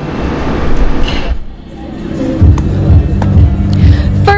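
Ballpark ambience: a rush of background noise, then music with a heavy pulsing bass from the stadium sound system coming in about halfway through.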